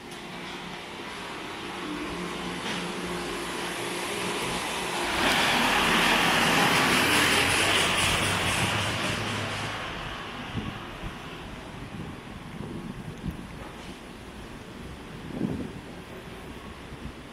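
A motor vehicle passing close by in a narrow street: its noise builds, jumps louder about five seconds in, holds for about five seconds as a rushing sound, then fades away.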